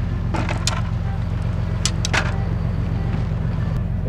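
A steady low mechanical drone, like an engine running, with a fine, even pulsing. Two brief clusters of sharp clicks sound over it, one early and one about halfway through.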